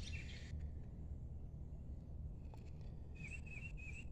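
Quiet outdoor ambience: a low steady rumble, with a bird's thin wavering call starting about three seconds in.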